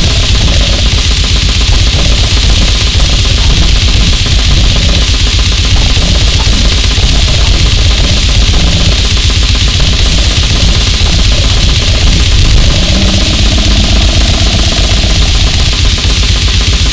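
Goregrind: heavily distorted guitar and very fast, dense drumming, loud and unbroken.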